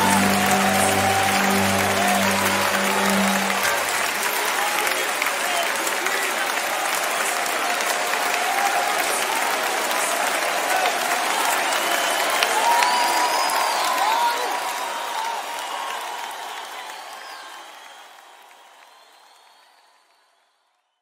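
Audience applause with scattered shouts at the close of a live worship song: the band's last sustained chord dies away a few seconds in, then the clapping goes on and fades out near the end.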